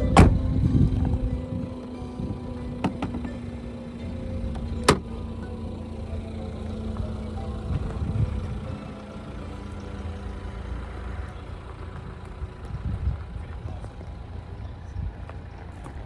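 Nissan Qashqai rear door shut with a thump just after the start, then a steady low rumble with two sharp clicks a few seconds later.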